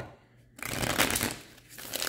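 Tarot cards being shuffled by hand: a papery rustle that starts about half a second in and fades out over about a second.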